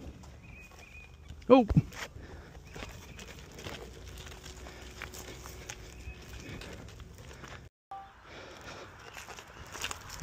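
Off-road wheels rolling and skidding down a rocky dirt trail: a rough rustling rumble with scattered clicks and knocks of stones and gravel, cut off briefly near the end.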